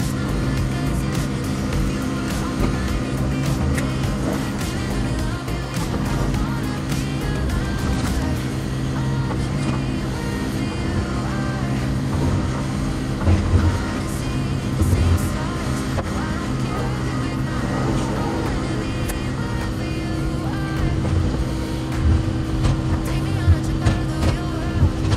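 Excavator's diesel engine running steadily under working load, with knocks and clatter of concrete blocks as the bucket breaks up and drops a block wall, the knocks sharpest about halfway through and near the end. Background music plays over it.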